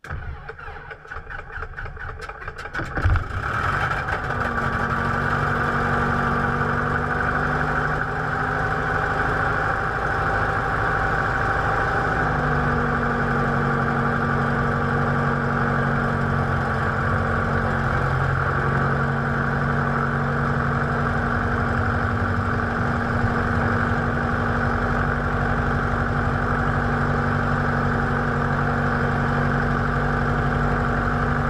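Pitts Special biplane's piston engine being cranked, with rapid pulsing, then catching with a jolt about three seconds in and settling into a steady idle.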